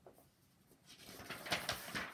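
Paper rustle of a picture book's pages being turned by hand, starting about a second in and loudest near the end.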